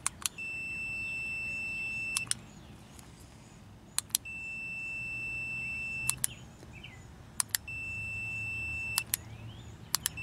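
An IDEAL 61-340 multimeter's continuity beeper sounds a steady high tone three times, each about two seconds long. Each tone is switched on and off by sharp clicks of a push-button switch held across the meter's leads. Each tone means the switch is closed and the circuit complete, which confirms the right pair of wires for the switch.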